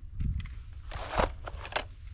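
A few short plastic knocks and crunches from toy cars and a plastic track launcher being handled on dry dirt, the loudest about a second in, over a low steady rumble.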